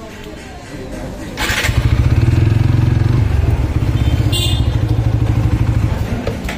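Motorcycle engine starting about a second and a half in, then idling with a loud, low, rapidly pulsing exhaust beat.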